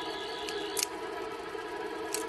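Background score of a sustained drone of held tones. A high warbling tone over it ends a little under a second in, and two short clicks come before that.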